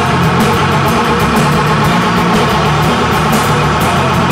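Live rock band playing loud and steady: electric guitars and bass guitar over drums keeping a fast, even beat.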